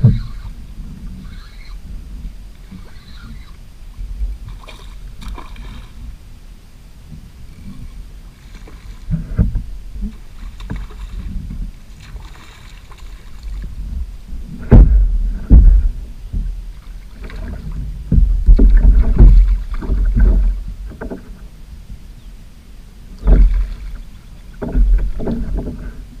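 Irregular low thumps and knocks on a plastic fishing kayak's hull, with water disturbance, as a hooked snook is fought beside the boat and brought aboard. The bumps are loudest in clusters around the middle and near the end.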